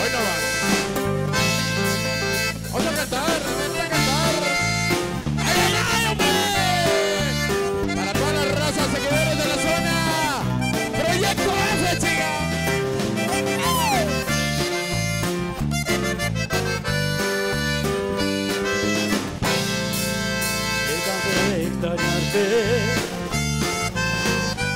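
Live regional Mexican band playing the instrumental opening of a song: twelve-string acoustic guitar, electric bass and drums under a lead melody full of sliding, bending notes.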